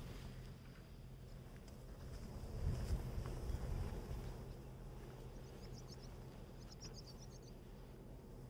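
Outdoor wind rumbling on the microphone, with faint high bird chirps in two short runs past the middle.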